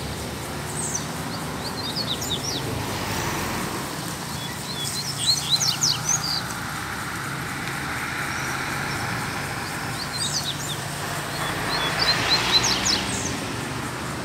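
Coleiro (double-collared seedeater) singing: about five short, very fast phrases of quick falling high notes, spaced a couple of seconds apart. A broad rushing noise swells and fades in the second half under the song.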